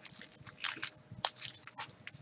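Wrapped trading-card packs being handled and set down in a stack, giving a run of short crinkles and clicks, about six in two seconds.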